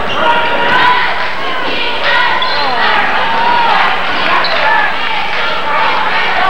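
Basketball game in a school gym: a crowd of voices shouting and talking at once, echoing in the hall, with a basketball bouncing on the hardwood court.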